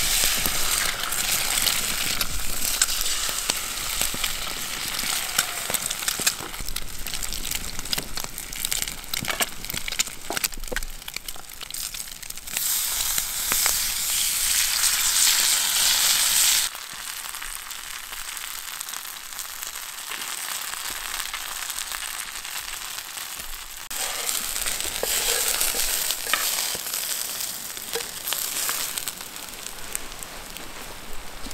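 Bacon and eggs sizzling in a frying pan over an open wood fire, with fine crackles and pops throughout. The sizzle is loudest about halfway through, drops away sharply for several seconds, then comes back before falling off just before the end.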